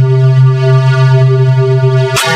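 A loud, steady synthesized buzzing tone held on one low pitch with many overtones: processed, effect-distorted audio of a logo sound.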